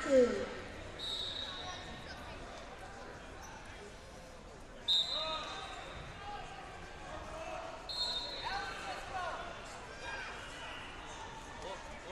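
Echoing sports-hall ambience with distant crowd voices, cut by three short, high referee's whistle blasts about a second long, at about one, five and eight seconds in. A sharp knock comes just before the second whistle.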